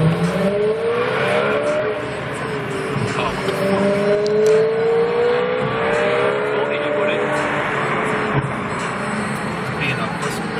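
BMW M3 E92's V8 with a custom exhaust accelerating hard, its pitch climbing in one pull in the first two seconds and a longer one from about three to seven seconds in, heard through the windshield of a following car.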